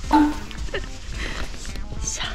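A woman's voice, a short laughing burst just after the start followed by breathy sounds, over a steady low rumble of wind on the microphone.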